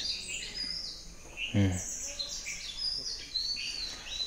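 Birds chirping, a steady string of short high calls and whistles, with one brief human vocal sound about a second and a half in.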